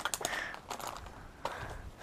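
A plastic bag crinkling and rustling softly as it is handled, with a few light crackles in the first half second.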